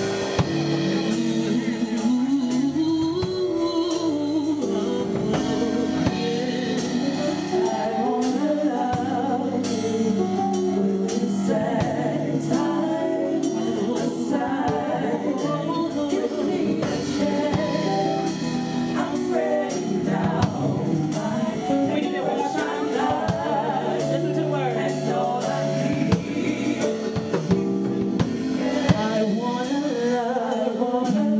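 Gospel song performed live: a woman singing into a handheld microphone over accompaniment with a steady drum-kit beat.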